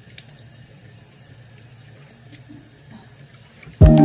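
Water running from a tap into a bathroom sink as a quiet, even hiss. Just before the end, music with bell-like mallet notes and held chords cuts in suddenly and loudly.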